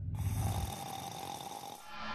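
A man snoring in his sleep, one drawn-out snore that fades away.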